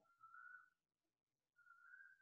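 Near silence: room tone, with two faint, steady, high whistle-like tones of about half a second each, one near the start and one near the end.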